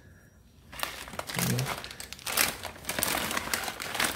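Plastic bird-food packet crinkling as it is handled in the hands, starting about a second in and going on as a dense irregular crackle.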